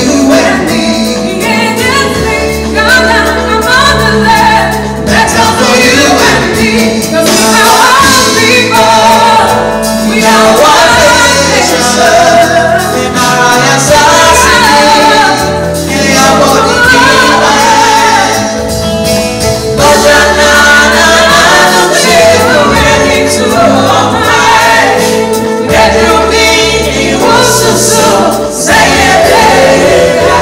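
A live band plays continuously: a woman sings lead, with a small group of backing vocalists, over keyboard, electric and bass guitars and a drum kit.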